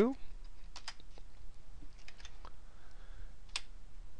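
Several scattered keystrokes and clicks on a computer keyboard, spaced irregularly over a few seconds, as a closing bracket is typed into a spreadsheet formula.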